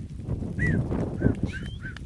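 A herder's short whistled notes, about five in quick succession in the second half, one sliding upward, over a low rustle.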